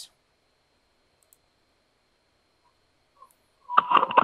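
Near silence on a video-call line, then near the end a burst of clicking and crackling with a brief steady tone as a remote participant's audio comes through.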